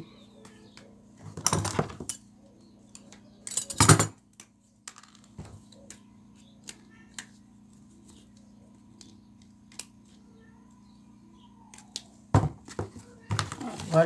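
Handling noise from craft work: a plastic tube cut from a network cable being worked onto a wire with pliers. Two short rustling scrapes about one and a half and four seconds in, the second the loudest, then scattered faint clicks and more rustling near the end.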